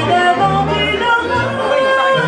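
A woman sings a French chanson into a microphone, backed by accordion and a plucked upright double bass, played live. The bass sets down held low notes that change about every half second under the moving vocal line.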